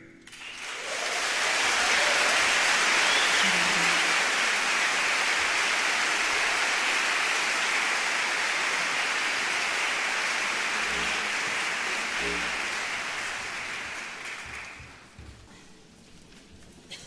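A large concert audience applauding. The clapping swells within the first two seconds, holds steady, and dies away near the end.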